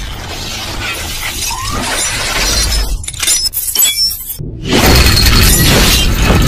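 Cinematic logo-intro sound effects: dense metallic clinks and shattering clatter of scattering gun parts over a build that grows steadily louder. The sound cuts out briefly about four seconds in, then a loud, deep hit comes in and carries on.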